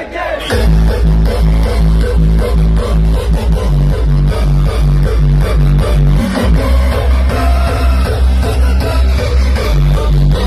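Hardstyle DJ set played loud over a festival sound system, heard from within the crowd. The heavy kick drum and bass come in about half a second in and keep pounding at an even beat, with the bass pattern shifting about two-thirds of the way through.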